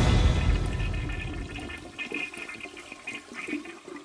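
A rushing, water-like noise that fades away over the first second or two, leaving only faint scattered rustles.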